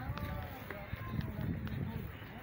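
Indistinct voices of people talking at a distance, with uneven low rumbling on the microphone.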